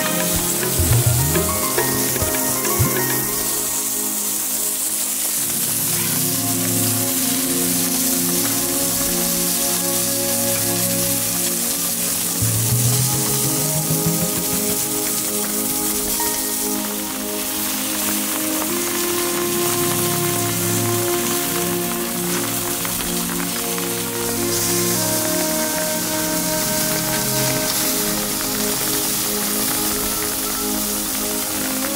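Meat skewers sizzling on a grate over a charcoal fire, a steady crackling hiss, under background music of sustained notes that shift every few seconds.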